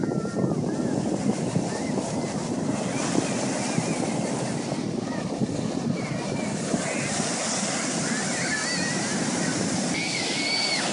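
Ocean surf breaking and washing up the beach, a steady rush of waves and foam.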